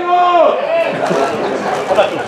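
Men shouting across an outdoor football pitch: one long held call in the first half second, then several voices calling over one another.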